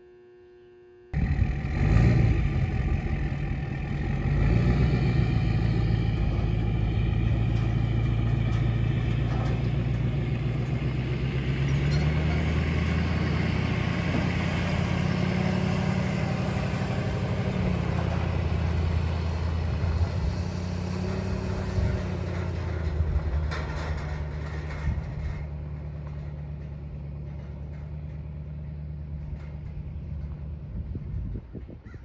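Dual-rear-wheel pickup truck towing a loaded trailer drives past, its engine pulling under load and rising in pitch as it accelerates. It starts about a second in and fades into the distance near the end.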